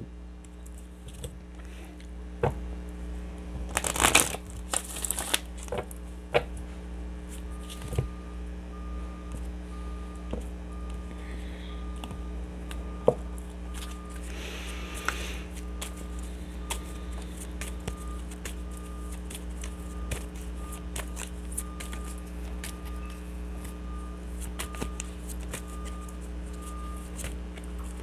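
A deck of oracle cards being shuffled by hand: soft papery riffles and taps, with louder rustling riffles about four and five seconds in and again around fifteen seconds.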